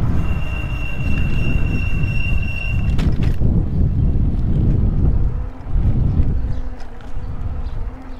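Wind buffeting the microphone and tyre rumble from a folding e-bike riding on pavement. A thin, steady high whine runs for the first three seconds or so, and a lower steady hum comes in near the end.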